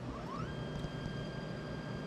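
Anycubic Photon M3 Max resin printer running mid-print: a steady fan hiss, and about a quarter second in a whine rises in pitch and then holds steady. The whine is the Z-axis stepper motor moving the build plate between layers.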